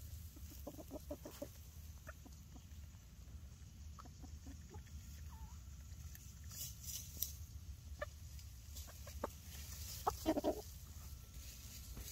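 Hens clucking softly close to the microphone: a quick run of short clucks about half a second in, then scattered single clucks, with the loudest cluck near the end.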